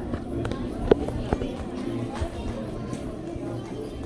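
Background music and people's chatter in a large hall, with two sharp knocks about a second in, the first the loudest.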